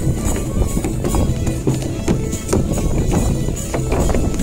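Belarusian duda bagpipe playing a lively folk dance tune over a steady drone, with a buben frame drum beating time. Dancers' feet stamp and shuffle on wooden boards along with the music.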